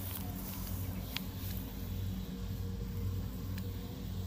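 Steady low engine hum of farm machines working in a harvested rice field, with a couple of faint clicks.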